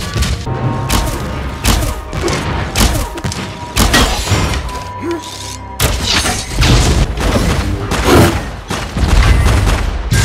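Action-film battle soundtrack: a musical score under a run of sharp impacts, metallic crashes and booms. A brief laugh comes about five seconds in.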